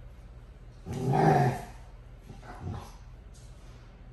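Dogo Argentino giving short vocal sounds while playing tug of war with a rope toy: one loud call lasting under a second about a second in, and a shorter, quieter one a little later.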